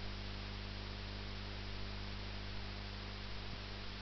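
Steady electrical mains hum with a faint hiss, picked up by the recording microphone.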